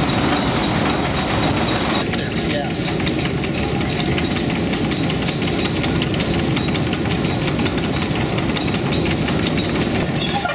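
Working water-powered grist mill: the runner millstone turning in its wooden casing with a steady rumble and a fast, continuous clatter from the grain-feeding shoe and damsel. The sound shifts slightly about two seconds in.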